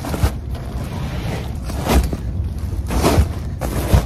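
Heavy plastic bags of mulch being hoisted, slid and dropped into a car's carpeted cargo area: plastic crinkling and scraping, with several dull thumps, the loudest near the end, over a steady low rumble.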